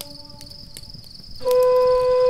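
Native American flute: a held note fades away, and after a short pause a new long, low note comes in about one and a half seconds in. Underneath, a wood fire crackles faintly and a steady high-pitched chirping runs on.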